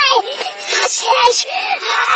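A boy's shouting voice played backwards: a run of short, warped, sing-song pitched cries that bend up and down.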